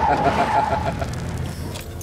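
A car engine running, a steady low rumble, with a man's laughter fading out over the first second.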